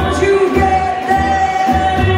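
Live jazz band playing: a woman singing with clarinet, trumpet and upright bass. A note is held for about a second in the middle over a steady bass pulse.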